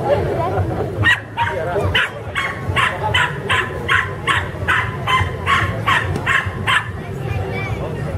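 A mudi barking at the decoy in protection work, in a rapid, even series of about fourteen sharp barks, roughly two and a half a second. The barking starts about a second in and stops about a second before the end.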